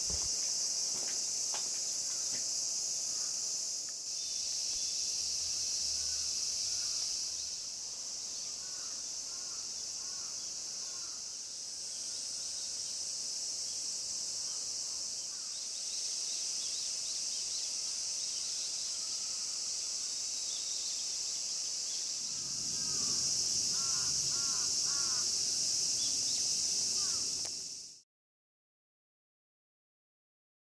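Steady high-pitched chorus of cicadas, with short chirping bird calls now and then, busier near the end. The sound cuts off suddenly at the end.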